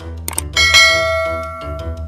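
Subscribe-animation sound effects: two quick clicks, then a bright bell ding that rings and fades over about a second, with background music underneath.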